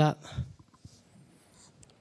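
A man's voice ending a sentence on one word, followed by near silence in the hall.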